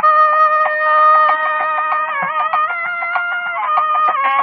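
Nadaswaram, the South Indian double-reed pipe, playing Carnatic raga Devagandhari: a bright, reedy held note with slides between pitches, broken in the middle by a quick run of short repeated notes about five a second.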